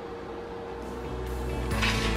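Background music fading in: quiet at first, growing louder as low bass notes come in about a second in.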